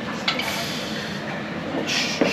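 Loaded barbell set back into the squat rack's hooks with a short metal knock about a quarter second in, over steady gym room noise; a louder rush of noise follows near the end.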